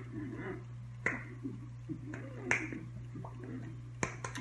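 Hands smacking and tapping together during fast sign-language signing. Two sharp clicks stand out, about a second in and about halfway through, over a steady low hum.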